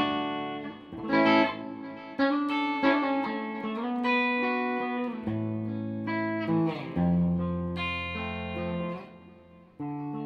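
Hofner Galaxie reissue electric guitar played clean on its neck mini-humbucker alone: a run of picked chords and single notes left to ring. About seven seconds in a low chord is held and fades out, and a new chord is struck right at the end.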